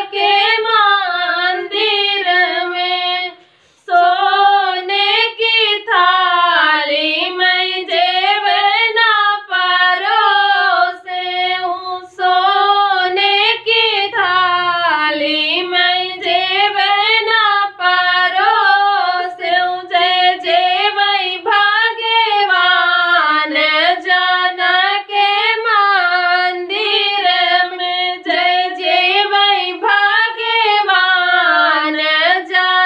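Two women singing a sohar, a north Indian folk song for a birth, together in one melodic line without instruments, with a short breath pause about three and a half seconds in.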